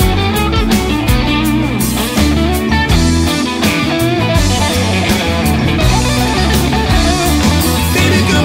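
Rock band playing an instrumental passage of the song, with electric guitar to the fore over bass and drums.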